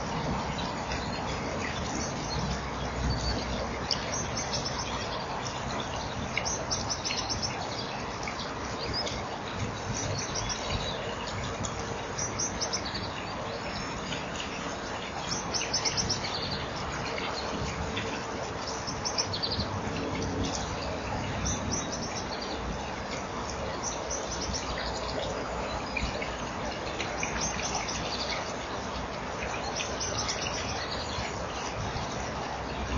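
High-pitched bird calls: short chirps and trills repeated every second or two, over a steady background hiss.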